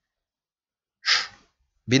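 A man's short, sharp intake of breath about a second in, between spoken sentences; silence otherwise.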